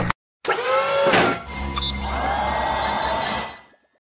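Synthesised logo sting: a whoosh with falling pitch sweeps, then a swelling sustained tone with a brief high shimmer, fading out shortly before the end.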